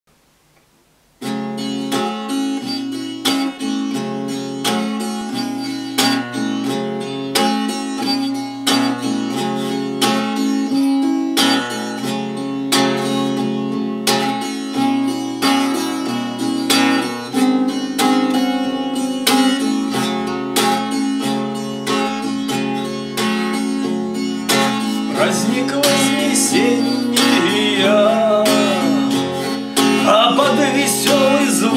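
Eight-string Ovation Celebrity CC 245 acoustic guitar strummed in a steady rhythm, starting about a second in. A man's singing voice comes in near the end.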